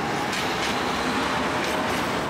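Electric articulated tram passing close by: a loud, steady rumble of steel wheels on the rails with a faint whine.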